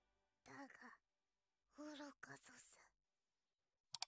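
A man's faint, wordless, breathy exclamations of shock: two short sighing sounds, the second longer, with near silence between. A sharp click comes near the end.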